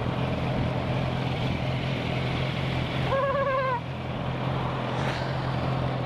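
Motorcycle engines idling steadily while the bikes wait in traffic. About three seconds in, a short high pitched note sounds for under a second.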